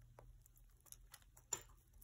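Faint, scattered taps and small clicks of fingertips pressing a pressed flower down into a metal pendant bezel, with one sharper click about one and a half seconds in.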